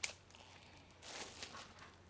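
Plastic shrink-wrap on a box being torn off along its pull tab: a sharp crackle at the start, then a short rustling crinkle about a second in.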